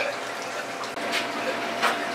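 Steady hiss of running water and pumps from aquarium filtration, with two short sharp noises, about a second in and near the end.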